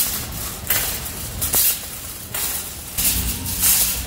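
Wire shopping cart being pushed, with a low rumble of its wheels on the floor and loud, noisy bursts of rattling several times.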